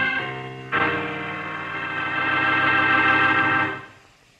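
Organ music bridge in a radio drama: a held chord dies away, then a new full chord comes in just under a second in, is held steady, and fades out near the end.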